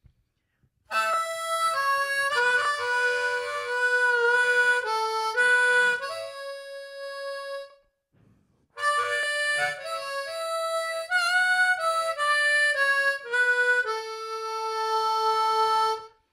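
Harmonica playing a melody in two phrases of about seven seconds each, with a short pause between them.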